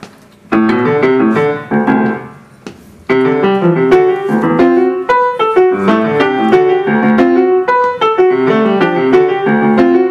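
Grand piano played solo: two short phrases, then from about three seconds in a continuous repeating rhythmic figure of interlocking notes. It is the germ motif of a cello-clarinet-piano trio, built from looping rhythmic patterns.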